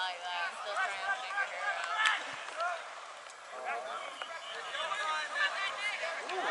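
Several voices shouting and calling across an open rugby pitch, overlapping and unclear, from players and sideline spectators; the shouting dips briefly in the middle and grows louder near the end.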